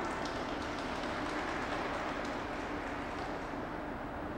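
Scattered applause over the steady background noise of an ice rink, just after the program music has ended.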